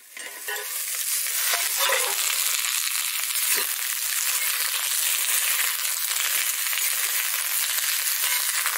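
Pointed gourd (parwal) pieces sizzling in hot oil in an iron kadhai, a steady hiss, while a steel spatula stirs them from time to time.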